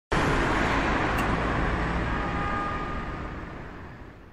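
Intro sound effect: a rush of noise that starts suddenly and fades away gradually over about four and a half seconds.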